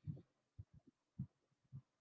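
Near silence broken by a handful of faint, short, low thumps at irregular intervals.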